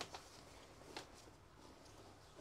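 Near silence, with the faint rustle of clothes being lifted and handled in a plastic storage tub: a soft brush right at the start and another about a second in.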